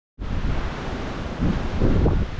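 Wind buffeting the microphone: a loud low rumble that swells in a gust about one and a half seconds in.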